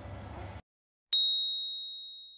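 A single bright ding, a bell-like sound effect: one sharp strike leaving a single high ringing tone that fades away over about a second and a half.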